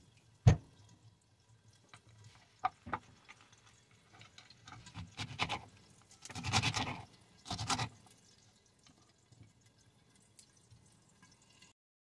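Chef's knife cutting cabbage leaves on a bamboo cutting board: a sharp knock about half a second in, a couple of lighter taps, then three short crunchy cuts through the leaves a little past the middle.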